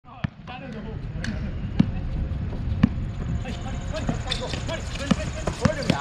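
A basketball bouncing on an outdoor hard court: separate sharp bounces a second or more apart, coming closer together near the end, with players' voices in the background from about halfway.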